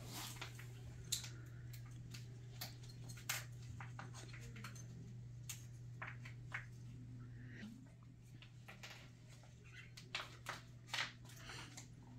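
Scattered soft clicks and rustles of plastic as an IV infusion bag and its tubing are handled in gloved hands, over a steady low hum.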